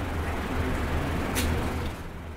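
Steady low hum and background noise of a room, with a brief hiss about one and a half seconds in.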